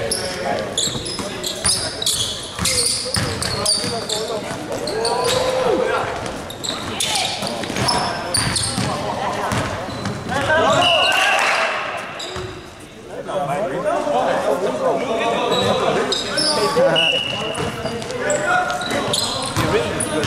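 Basketball game in a reverberant gym: the ball dribbled and bouncing on the hardwood floor, sneakers squeaking, and players calling out indistinctly.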